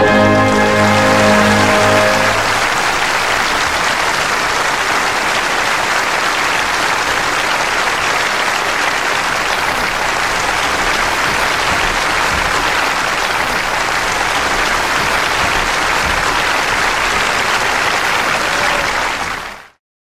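The orchestra's final chord of the opera aria holds for about two seconds. Then an audience applauds steadily, fading out near the end.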